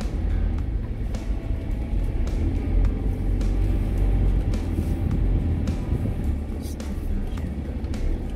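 Steady low rumble of a car's engine and tyres heard from inside the cabin as it drives slowly, with background music over it.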